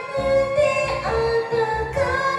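A woman singing a Japanese song into a karaoke microphone over a backing track, holding long notes.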